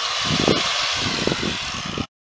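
Electric hand grinder grinding the edge of a steel lawn mower blade, a steady grinding noise, taking metal off the heavier side to balance the blade. It cuts off suddenly at the end.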